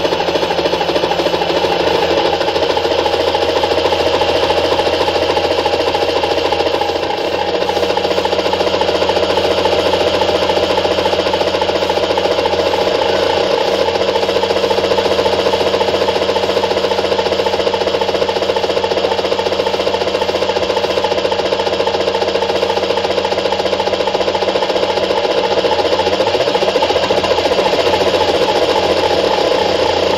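A steady engine drone played loud over the stage loudspeakers as the sound effect of the prop helicopter. It runs on unbroken, with a slight dip in level about seven seconds in.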